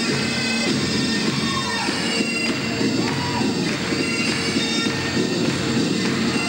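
Bagpipe music: a tune played over the steady drone of the pipes.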